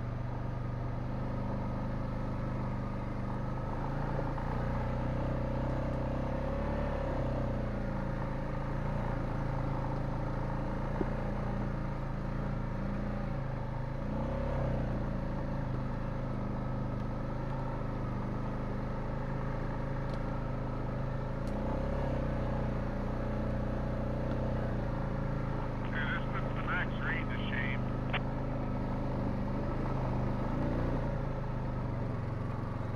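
Honda Rubicon ATV engine running at low trail speed, its pitch rising and falling gently as the throttle is worked. A brief high twittering sound comes in about four seconds before the end.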